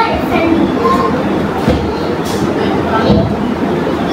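Steady, loud rushing whir of a small electric fan running close to the microphone.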